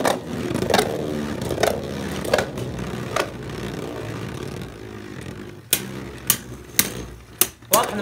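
Two Beyblade Burst tops spinning in a plastic Beystadium: a steady whir, with sharp plastic clacks as they collide, about four in the first three seconds, a quieter stretch, then several more in the last two and a half seconds.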